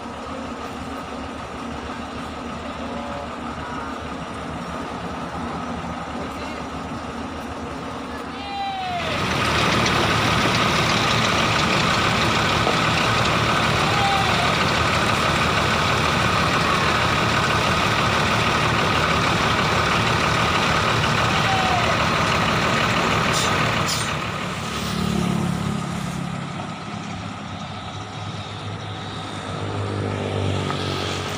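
Large diesel bus engines running. The sound grows much louder about nine seconds in and stays loud and steady for about fifteen seconds before easing back.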